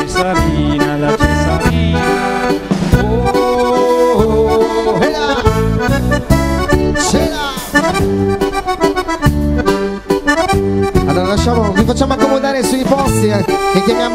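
Two accordions playing a fast tune together, over a steady, repeating bass beat.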